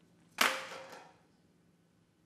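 A single sharp, loud crack less than half a second in, ringing briefly in the hall and fading within about a second.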